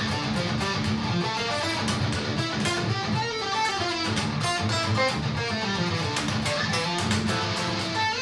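Schecter Hellraiser C1 electric guitar in drop D tuning playing a fast, continuous stream of picked single notes, running up and down the minor scale across positions on the neck.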